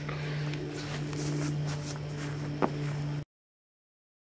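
Plastic parts and paper wrapping being handled, with rustling and one sharp click about two and a half seconds in, over a steady low hum. The sound cuts off abruptly a little after three seconds.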